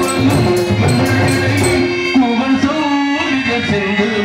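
Live Tamil folk-drama band music: hand drums and a jingling tambourine over steady held melody notes. About halfway through, the drums and tambourine drop out, leaving a melody line that slides up and down in pitch.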